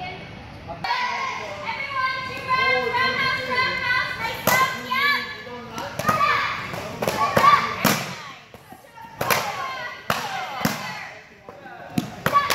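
A group of children's voices calling out together, then, from about four and a half seconds in, taekwondo kicks hitting hand-held kicking paddles: a string of sharp, separate slaps with short shouts between them.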